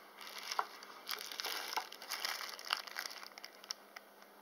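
Thin clear plastic bag crinkling as the stone specimen inside it is picked up and handled: irregular, fairly faint rustles and crackles.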